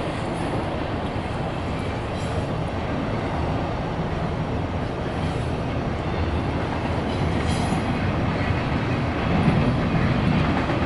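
Double-stack intermodal container cars rolling past on a steel girder bridge, a steady noise of wheels on rail.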